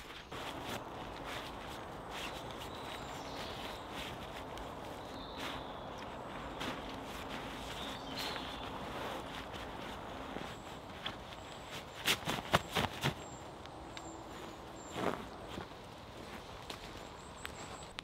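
Tent fabric rustling and crumpling as a French F1 military pup tent is folded and rolled up on leaf litter, with a short run of sharp clicks about twelve seconds in and another click about three seconds later.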